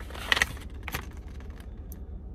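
Paper and a plastic card top-loader being handled, with a few short crinkles and rustles in the first second and lighter ones after.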